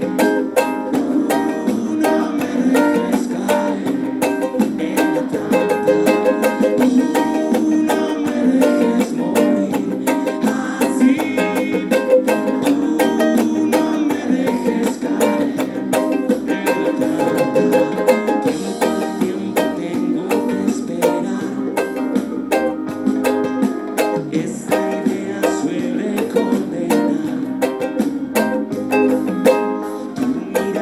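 Ukulele strummed in a steady, repeating chord pattern of quick down and up strokes.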